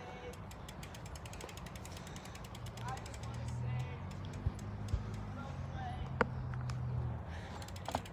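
BMX rear hub ticking rapidly as the bike coasts, its freewheel pawls clicking, over a low steady rumble for a few seconds in the middle.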